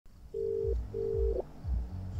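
Telephone ringback tone of an outgoing call waiting to be answered: two short steady beeps in the Australian double-ring pattern. A low thudding pulse runs underneath, about twice a second.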